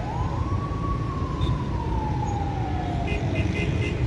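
A siren wailing once: its pitch rises quickly at the start, then falls slowly over about three seconds and fades out. Underneath is a steady rumble of road traffic.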